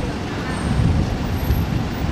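City road traffic heard from just above: a bus and a small truck passing close below among cars, a steady low rumble of engines and tyres.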